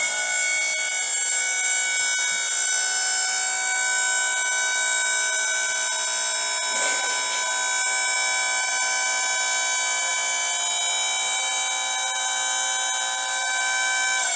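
Wood-Mizer LT40 sawmill's electric hydraulic pump running under load as it moves the log loading arms: a steady, high, multi-tone whine that starts abruptly and holds an even pitch and level.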